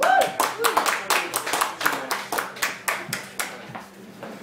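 Small audience clapping at the end of a live acoustic song: a burst of separate hand claps that thins out and fades, with a brief voice calling out at the start.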